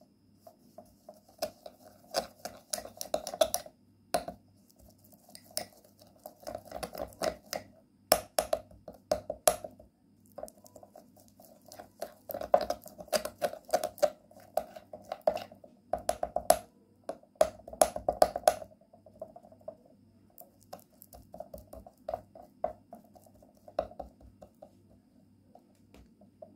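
Metal teaspoon stirring and scraping a sticky paste of ground bay leaves, honey and petroleum jelly against the inside of a glass bowl: irregular clinks and scrapes in spells with short pauses, thinning out to lighter scraping in the last third.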